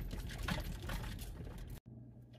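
Dodge Grand Caravan minivan rolling slowly over a dirt clearing, heard from inside the cabin: engine and tyre noise with a few clicks. It cuts off sharply near the end, leaving a faint steady low hum.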